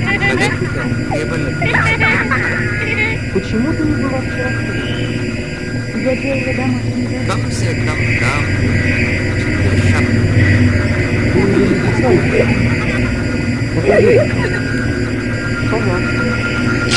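Dense electroacoustic sound collage: a steady low drone and constant hum tones, layered with short warbling, voice-like fragments that slide in pitch and a few sharp clicks.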